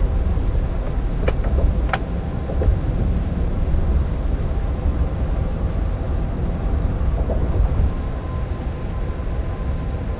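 Steady low rumble of a moving vehicle heard from inside the cabin, with two brief clicks about a second and a half and two seconds in.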